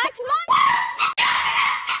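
A short rising voice, then a loud, harsh, distorted scream held for about a second and a half.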